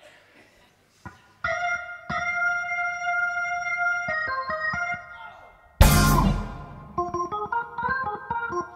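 Hammond organ playing held chords that open the tune after a quiet first second, changing chord a few times and fading. About six seconds in comes a loud crash from the full band, followed by short organ chord stabs.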